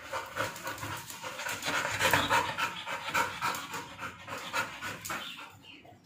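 Black Labrador panting rapidly, about three to four breaths a second, fading out near the end.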